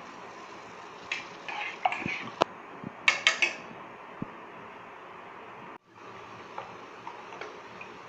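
Metal spoon scraping and clinking against a stainless steel pot as salt is stirred into water, with several sharp clinks in the first few seconds, over a steady background hiss.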